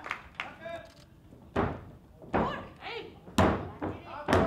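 Three thuds on the canvas of a wrestling ring, about a second apart, the loudest near the end. Short shouts come between them.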